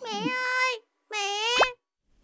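A high-pitched child's voice calls out in two drawn-out sounds. The second ends in a quick upward swoop and a pop.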